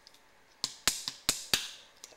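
Four sharp wooden clicks from a Red Heart maple fingerboard deck being snapped and handled in the fingers, showing off its pop.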